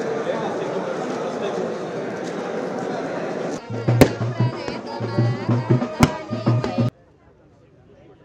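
Dense crowd chatter, then a cut to lively festive music with a heavy drumbeat and a high wavering melody, with two sharp cracks about two seconds apart. The music stops abruptly near the end.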